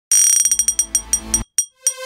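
Logo jingle of bright chime-like strikes: a fast run of about ten ringing hits over a low rumble that stops suddenly about a second and a half in, followed by two separate pings near the end.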